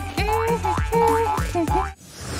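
Upbeat background music with a steady low beat and a run of short springy sliding tones, about three a second, which cuts off abruptly near the end.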